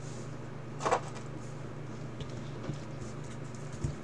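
Trading cards handled in the hands, with one brief swish about a second in and a faint click near the end, over a steady low hum.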